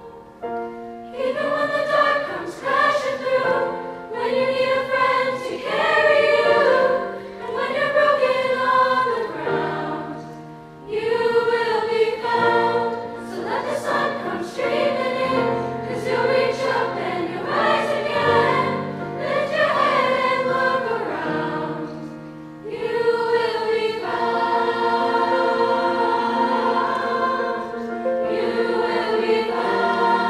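Mixed-voice high school choir singing in phrases, with brief breaks about a second in, around ten seconds in and about three-quarters through, then held chords near the end.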